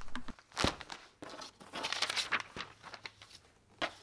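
Cardboard mailer box being opened and its contents handled: irregular rustling and crinkling of the packaging, with a sharp knock about half a second in.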